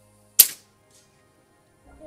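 A single shot from a scoped field-target air rifle, a sharp crack that dies away within a fraction of a second, followed about half a second later by a faint tick of the pellet striking the distant steel target, which sounded like a faceplate hit rather than a paddle hit.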